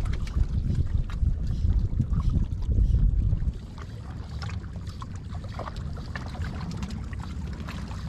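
Wind buffeting the microphone in an uneven low rumble, strong for about the first three seconds and then easing, over seawater sloshing against shoreline rocks.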